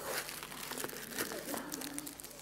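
Faint crinkling and rustling, with quiet murmured voices.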